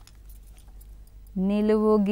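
Faint clicks and clinks of wax crayons being handled. About a second and a half in, a woman's voice starts holding one long, level note, a drawn-out chanted syllable.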